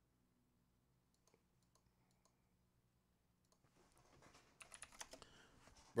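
Near silence, then faint, irregular clicking from a computer keyboard about halfway through, like light typing.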